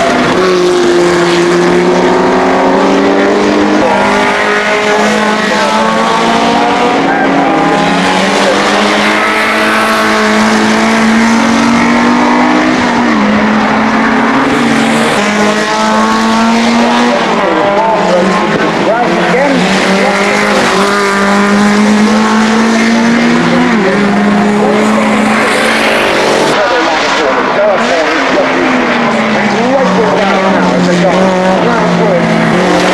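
Racing touring car engines running hard as the cars lap past. The sound is continuous, with several engine notes overlapping and rising and falling in pitch.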